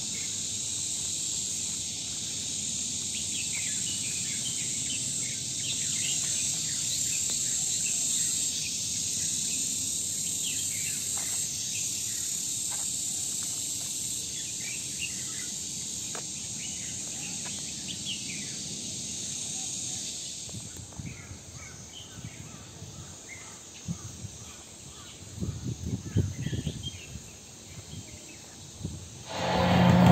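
Outdoor ambience of a steady, high insect drone with scattered short bird chirps. The drone drops away about two-thirds of the way through, leaving quieter chirps and a few low thumps. Loud parade sound cuts in just before the end.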